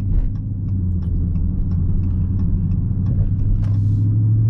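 The 6.4-litre 392 HEMI V8 of a 2020 Dodge Charger Scat Pack running steadily at low revs, a deep even drone heard from inside the cabin.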